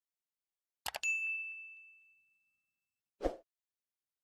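Subscribe-button animation sound effects: a quick double mouse click about a second in, followed at once by a single bright notification-bell ding that rings out and fades over about a second and a half. Near the end, a short soft thud.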